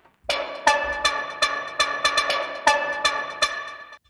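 Demo of the GAS software synth, an instrument built on electric guitar samples: a step-sequenced pattern of plucky pitched synth notes, about three a second, starting after a brief gap and cutting off suddenly at the end.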